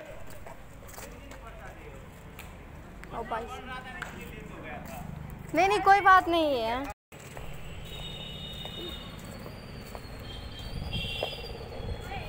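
People's voices in outdoor background noise: a few words about three seconds in, and a loud, drawn-out call around six seconds in.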